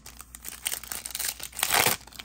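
Foil wrapper of a 2023 Topps Chrome Platinum trading-card pack crinkling and being torn open by hand, loudest near the end.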